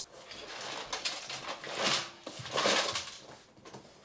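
Loose screws rattling and sliding inside a cardboard PC-case box as it is tilted, with the cardboard rubbing. The bag holding them has burst open. The sound grows louder twice around the middle and dies away near the end.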